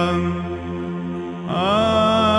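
Byzantine chant sung in Greek: a steady low drone holds under a sustained note. About one and a half seconds in, the melody voice comes back in, gliding up into a new held phrase.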